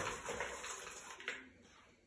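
Plastic measuring cup scooping dry Golden Grahams cereal out of a plastic mixing bowl: a rustling of loose cereal pieces that fades away over the first second and a half, with a light knock near the middle.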